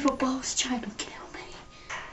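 A girl's voice making wordless sounds: a short voiced utterance falling in pitch at the start, then breathy, whispered hisses.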